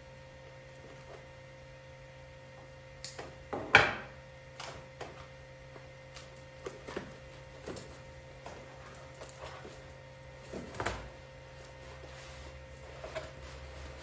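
Cardboard product box being opened by hand: tape cut or torn and flaps pulled open, with irregular rustles, scrapes and small clicks, the sharpest about four seconds in. A faint steady hum runs underneath.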